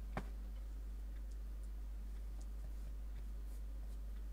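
A steady low electrical hum, with quiet handling sounds over it: one sharp tap just after the start, then a few soft ticks.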